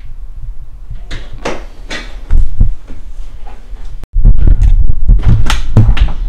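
Scattered light knocks and clicks. After an abrupt break about four seconds in come louder low thumps and clatter as a baby pushchair's car seat and frame are handled.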